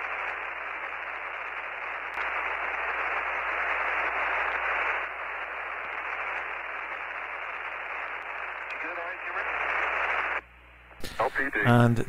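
Steady radio-channel static hiss, narrow and telephone-like, from the Apollo mission's air-to-ground audio, with a faint voice briefly surfacing near the end. It cuts off suddenly shortly before the end.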